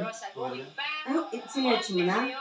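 A voice singing drawn-out notes that glide up and down, with music.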